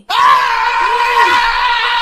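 A loud, angry scream held for about two seconds at a steady pitch, starting and cutting off abruptly.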